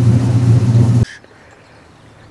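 Boat engine running under way, heard inside the canopied cabin as a steady low drone with rushing water and wind noise. It cuts off abruptly about halfway through, leaving only faint outdoor quiet.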